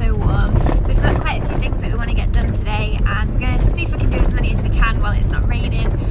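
Steady low road and engine rumble of a camper van driving, heard from inside the cabin, with a woman talking over it.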